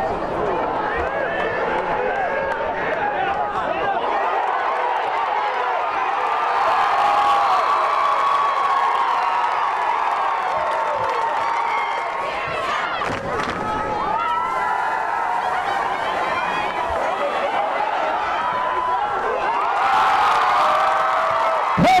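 High school football crowd cheering and yelling, many voices overlapping. It swells about six seconds in and again near the end as the play goes on.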